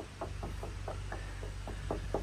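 Hand tapping the side of a black plastic rain barrel in a quick run of light knocks, about four to five a second, working up the barrel to find the water level by sound.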